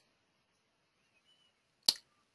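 Quiet room tone, then a single sharp click near the end.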